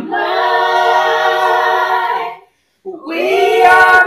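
A small group of mixed men's and women's voices singing a birthday song unaccompanied. They hold one long chord for about two seconds, break off briefly, then start the next line.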